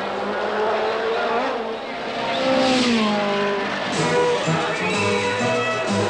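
Formula One racing car engine at high revs going past, its pitch falling sharply about two and a half seconds in. From about four seconds, music with held, stepping notes comes in over it.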